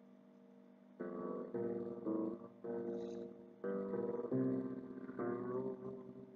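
Background music: a plucked string instrument playing a slow melody of single notes, each struck sharply and left to ring, starting about a second in and fading near the end.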